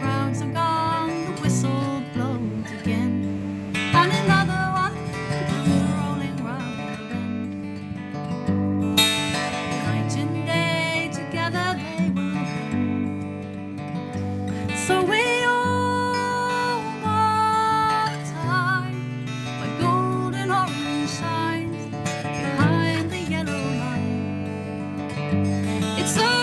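Acoustic guitar strummed steadily as the accompaniment to a folk song, with a woman's voice singing long, wavering held notes over it at times.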